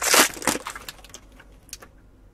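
The foil wrapper of a 2021 Topps baseball pack being torn open and crinkled. It is loudest in the first half second, with two sharp rips, then a few lighter crackles that fade out.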